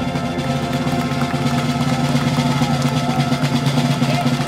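Marching brass band holding a long, steady chord over a rolled field drum.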